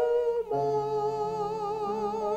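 A woman singing a hymn solo into a microphone. She sings a short note, then holds one long note with vibrato.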